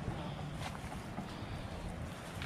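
Low, steady rumble of wind on the microphone, with a few faint snaps and rustles of branches as people push through a mangrove thicket.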